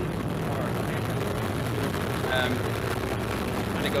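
Roar of a Vega rocket's solid-fuel motors at liftoff, played from launch footage: a steady, dense rumble, heavy in the lows, with a brief voice in it about halfway through.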